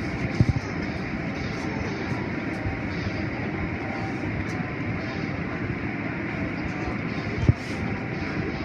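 Automatic car wash running, heard from inside the car: a steady rush of water and machinery, with a short knock about half a second in and another near the end.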